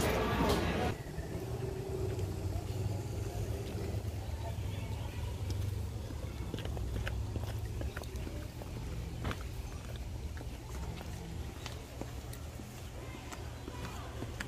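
About a second of indoor room chatter, then quiet outdoor background: a steady low rumble with faint, scattered clicks of footsteps on stone steps.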